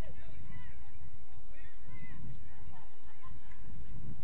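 Wind buffeting the microphone with an uneven low rumble, and a few short distant calls rising and falling above it.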